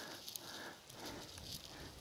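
Faint outdoor background noise, a low even hiss with no distinct event.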